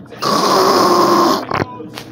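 A person coughing: one long, harsh, raspy cough lasting about a second, then a short second cough.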